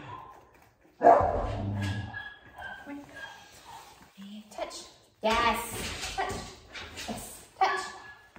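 A 16-week-old standard schnauzer puppy barking and yipping in play, loudest about a second in, with another run of barks from about five seconds in.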